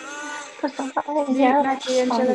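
A woman's voice singing along over a video call, holding long notes that waver in pitch.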